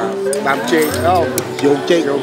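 Restaurant ambience: background music with held notes and voices in the room, with a few light clinks of tableware.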